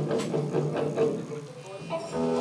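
A live band plays a riff of short, evenly repeated notes, with voices over the music.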